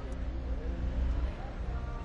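Street traffic: a steady low rumble of vehicle engines running, with faint voices near the end.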